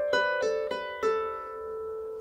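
Lever harp: four plucked notes about a third of a second apart, the last one left ringing and fading.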